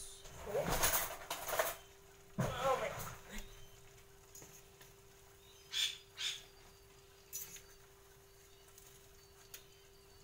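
Wooden spatula stirring and tossing noodles and shredded cabbage in a small wok: rustling of the food and a few light knocks of the spatula against the pan, in short bursts with pauses between.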